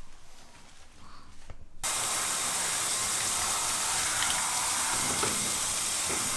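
Handheld shower head spraying water onto a pug in a bathtub: a steady hiss that starts abruptly about two seconds in.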